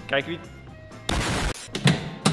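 Spider Box boxing arcade machine being readied for a punch: a short loud rush of noise about a second in, then a few sharp knocks near the end.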